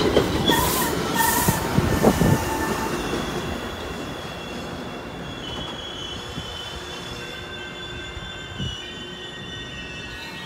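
Metra bilevel commuter train rolling past and slowing to a stop, with a few knocks from the wheels early on and a high, steady squeal from the wheels and brakes that holds as the sound of the passing cars fades away.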